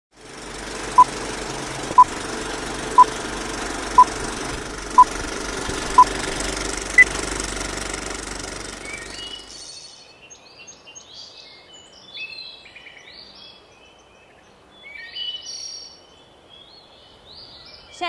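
Old-film countdown leader: a hiss with a low hum under six short beeps a second apart and a seventh, higher beep. About ten seconds in this gives way to birds chirping.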